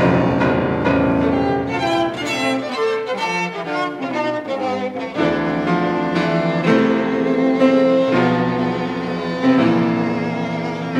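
Piano trio of violin, cello and piano playing classical chamber music: sustained bowed violin and cello lines over piano chords, with the cello's low notes coming in about five seconds in.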